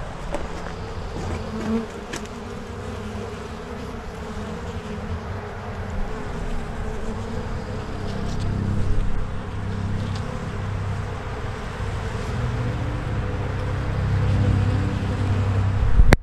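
Honeybees buzzing in a steady hum over the open frames of a hive box, swelling louder about halfway through and again near the end.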